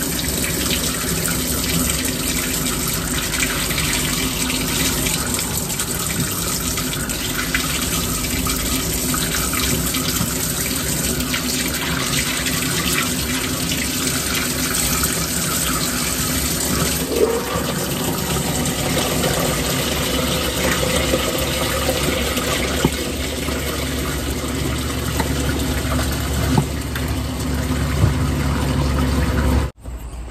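Water running steadily from a kitchen faucet into a stainless steel sink, splashing over a hand held under the stream. It stops abruptly just before the end.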